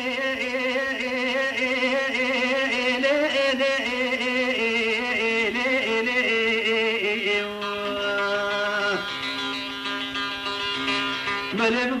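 Old Kurdish folk music from a cassette recording: a melody line with heavy vibrato and ornaments, settling into a few held notes about eight seconds in. A voice comes back in near the end.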